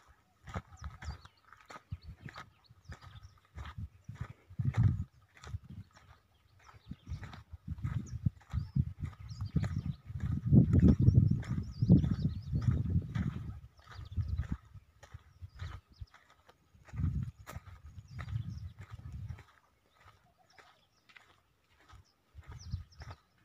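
Footsteps crunching over dry soil and dead grass, a quick irregular run of sharp steps. Low gusting rumbles on the microphone come and go, loudest about ten to thirteen seconds in.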